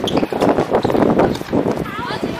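Tennis doubles rally on a hard court: quick knocks of racket on ball and ball on court, with players' footsteps and shoe scuffs and voices calling out, one short rising call near the end.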